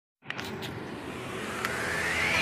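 Electronic music intro building up: a swelling rush of noise over held low notes, with a rising synth sweep starting near the end.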